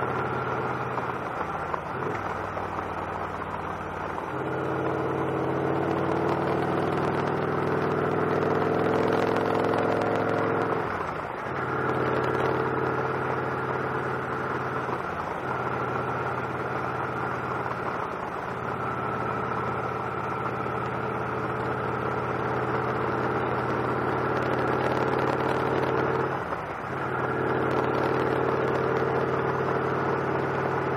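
Victory Cross Roads V-twin motorcycle engine running under way. The engine note climbs for several seconds, then dips briefly a few times before settling back to a steady note.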